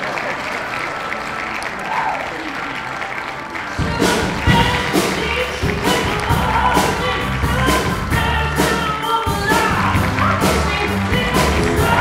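Band music: a soft opening, then drums and bass come in about four seconds in with a steady beat.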